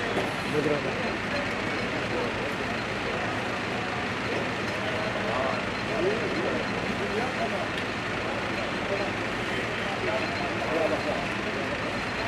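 Busy wholesale produce market ambience: a steady din of vehicle noise and scattered background voices.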